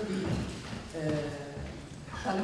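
A woman speaking into a table microphone, with a couple of low dull thumps under the voice.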